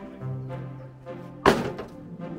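Background music with a steady melody, and about one and a half seconds in a single loud thunk of a stone dropped into a wheelbarrow.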